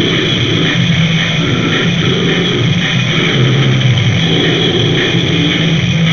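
Lo-fi demo recording of a noisy punk band: distorted guitar and bass in a dense, loud, unbroken wall of sound with a low end that pulses about twice a second.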